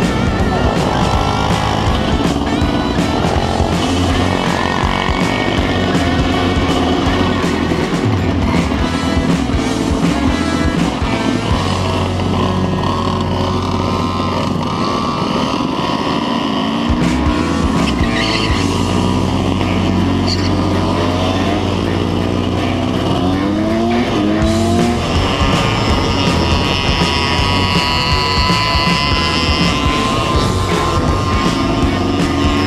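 Several motorcycle and moped engines running and revving in street traffic, with rising revs several times in the second half, heard together with music.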